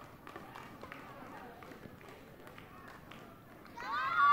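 Badminton hall ambience between rallies: faint distant voices with scattered clicks and short squeaks from play on neighbouring courts. A louder call rises and falls near the end.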